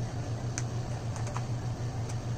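A few light, sharp clicks and taps from hands handling the cables and the camera, over a steady low hum.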